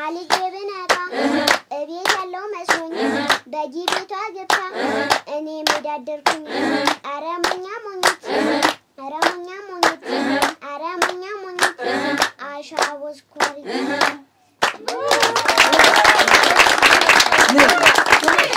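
A young girl's voice chanting in a steady sing-song rhythm, with a group clapping in time about twice a second. After a brief pause about fifteen seconds in, the group breaks into loud applause.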